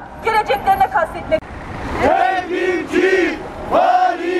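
A woman's voice through a megaphone ends a spoken statement about a second in, then, after a brief pause, a group of protesters starts chanting a slogan in unison with drawn-out syllables.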